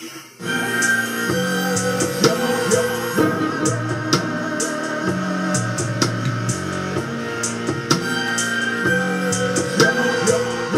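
Instrumental backing music with a steady drum beat, starting about half a second in after a brief dip.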